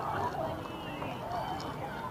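Faint chatter of several people's voices in a crowd, some of them children's, none close or loud.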